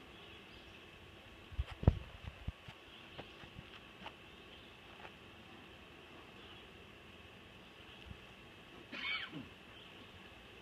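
Sharp knocks and clacks from handling a bee smoker and log hive, loudest in a quick cluster about two seconds in, with a few lighter clicks after. A faint steady high-pitched drone runs underneath, and a short wavering call comes near the end.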